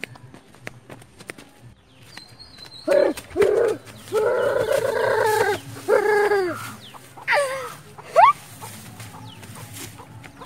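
A rooster crowing once, about three seconds in: two short notes, a long held note and a falling final note. A couple of short rising calls follow near the end.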